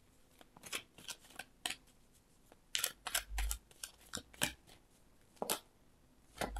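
Tarot cards being shuffled and handled: a run of short, irregular card flicks and slides, with a dull knock of the deck near the middle.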